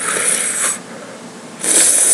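Two hissing breaths drawn in through a wet, drooling mouth, about a second and a half apart: a man cooling a mouth burning from a freshly eaten Chinense chili.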